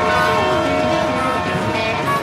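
A train horn sounding one long chord of several steady tones.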